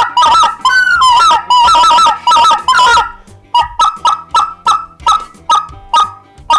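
Sean Mann White Front Guide XT, a turned acrylic white-fronted goose (speckle-belly) call, blown by hand. It gives a fast run of notes that break between two pitches for about three seconds. After a short pause comes a string of separate short clucks, about three a second.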